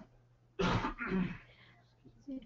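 A person clearing their throat with a cough, two quick bursts about half a second in.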